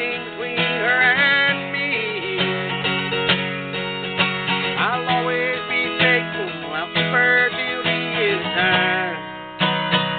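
Acoustic guitar strummed in a country song's instrumental break between verses, with repeated chord strokes ringing on.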